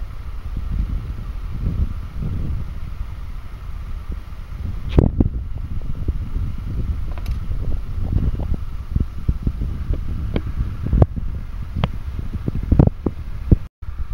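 Steady low rumbling noise broken by scattered sharp clicks and knocks, the loudest about five seconds in.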